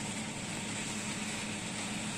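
Refrigerator running: a steady low hum under an even hiss.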